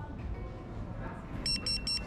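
Low background din of a food hall, then near the end a restaurant guest pager beeping rapidly, three short high beeps: the signal that an order is ready to collect.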